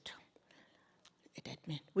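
Speech only: a woman talks into a handheld microphone, pauses briefly mid-sentence, then resumes quietly about a second and a half in.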